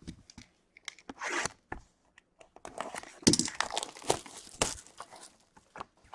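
Trading-card box being opened by hand: wrapping and packaging torn and crinkled. There is a short rustle about a second in, then a busy stretch of tearing and crackling in the middle.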